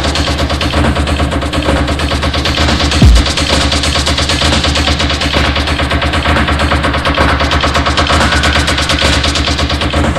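Techno track playing: a dense, rapid percussive texture over a steady deep bass, with a single heavy bass hit about three seconds in.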